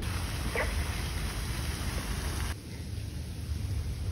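Steady splashing rush of a pond fountain, with low wind rumble on the microphone. About two and a half seconds in it cuts abruptly to a duller outdoor rumble without the water hiss.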